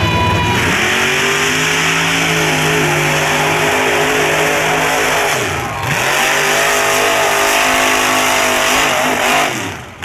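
Big-tire mud bogger's engine held at high revs as it runs through the mud pit. The revs drop sharply and climb back about halfway through, and fall away again near the end.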